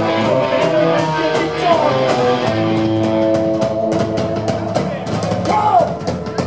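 Live band playing a loud, upbeat ska number: hollow-body electric guitars, upright double bass and drum kit, with held guitar notes over a steady drum beat.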